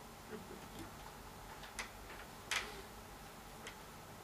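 A few faint, irregularly spaced light clicks and knocks over quiet room tone, the sharpest about two and a half seconds in.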